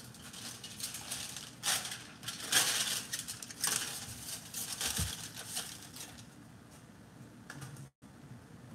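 Aluminium foil crinkling in bursts as it is folded and wrapped around baked potatoes, quieter in the last couple of seconds.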